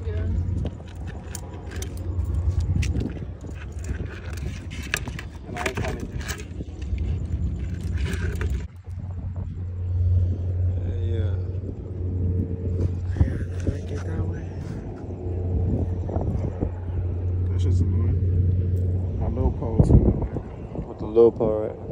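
A steady low hum that drops out briefly near the middle and stops just before the end, under muffled voices, with scattered small clicks and scrapes from pliers working the catch free.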